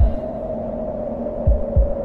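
A steady drone-like hum with heavy low thumps like a heartbeat: one thump right at the start and a lub-dub double thump about one and a half seconds in.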